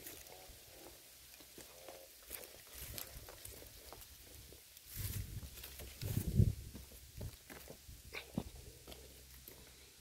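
Footsteps and handling noise of a phone being carried along a muddy bank: scattered soft rustles and clicks, with a louder low rumble about five seconds in that lasts a second and a half.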